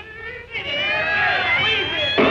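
Old jazz recording: the music dips briefly, then a lead line comes in that slides and bends up and down in pitch.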